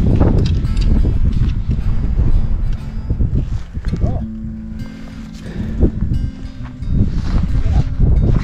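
Wind buffeting the camera microphone with a loud, uneven low rumble that eases for a few seconds midway.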